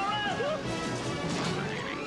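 Movie-trailer soundtrack: music with a crash-and-smash sound effect. A wavering pitched sound bends down and stops about half a second in, and crashing noise follows in the second half.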